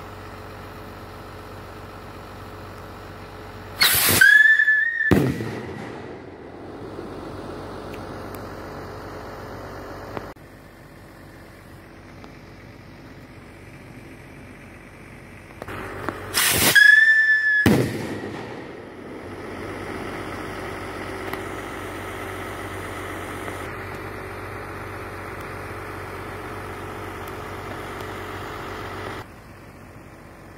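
Whistle rocket motor burning STRIKE whistle fuel while lifting a payload of almost a kilo: a loud, shrill, steady whistle that climbs briefly in pitch at ignition, lasts about a second and a half and cuts off sharply. The whistle is heard twice, about twelve seconds apart.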